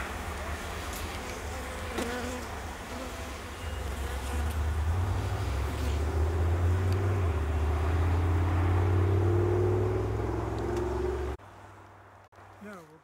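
Honeybees buzzing around an open hive over a steady low rumble, growing louder about halfway through, with a few faint clicks early on; the sound cuts off sharply just before the end.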